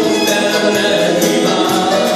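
Live gospel band playing a song: sung vocals over violin, acoustic guitar, keyboard and electric bass, with a steady beat.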